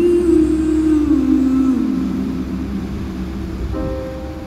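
Vehicle engine droning, its pitch sliding down over the first couple of seconds. Music comes in near the end.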